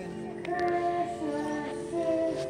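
A group of young children singing together in unison, holding long notes that step from one pitch to the next.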